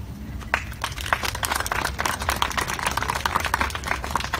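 A crowd applauding: many hands clapping in a dense, irregular patter that starts about half a second in.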